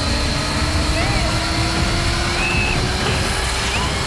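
Electric disc saw running with a steady whine whose pitch slowly rises.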